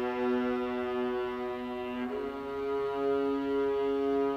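String orchestra with theorbo playing long, sustained chords; the harmony moves to a new chord about two seconds in.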